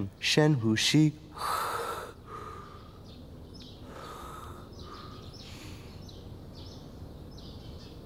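A man taking deep breaths in and out on request during a stethoscope chest examination. One loud breath comes about a second in, followed by a run of softer, regular breaths, after a brief spoken request at the start.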